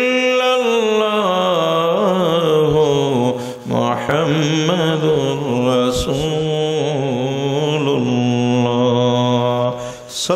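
A man's solo voice chanting an Islamic devotional melody through a microphone, in long drawn-out notes that waver and glide; he breaks off for breath about three and a half seconds in and again at the end.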